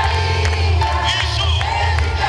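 Loud music with a crowd of people singing along, several voices holding and bending notes over a steady low bass.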